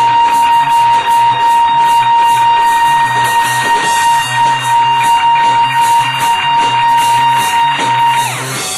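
Band music with guitar: one long, steady high note is held over a repeating beat of cymbals and low bass thuds.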